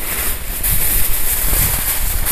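Aluminium foil crinkling and rustling as a large sheet is pulled over and folded down by hand, with wind rumbling on the microphone.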